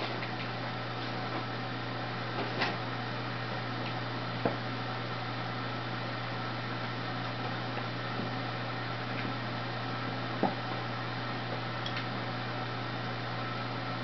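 Steady low hum of room noise, with a few faint short knocks about two and a half, four and a half and ten and a half seconds in.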